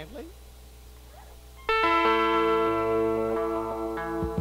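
Electric guitar chord struck suddenly about two seconds in and left ringing, with a few lower notes shifting under it, over a low steady hum.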